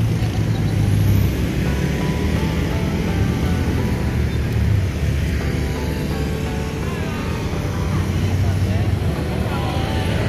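Road traffic on a busy street: a steady low rumble of car and motorcycle engines going by, with faint voices in the background.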